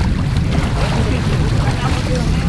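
Pool water splashing and streaming off as swimmers in soaked uniforms climb out over the edge, under a steady low rumble of wind on the microphone, with faint voices in the background.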